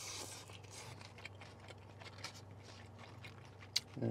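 A person chewing a mouthful of lettuce and steak from a burrito bowl with quiet, wet mouth sounds and small clicks, over a steady low hum. Near the end, a single sharp click as the fork picks at the bowl.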